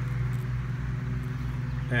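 A steady low mechanical hum with a faint rapid pulse, like an idling engine or motor running in the background.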